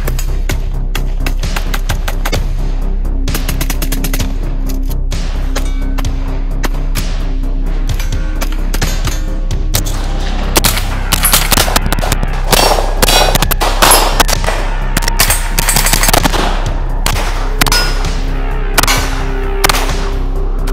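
Gunfire from several firearms over background music: scattered shots at first, then strings of quick shots that come loudest and thickest from about halfway through.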